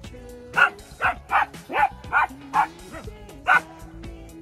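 A dog barking repeatedly, about seven short, sharp barks in quick succession, over background music with long held notes.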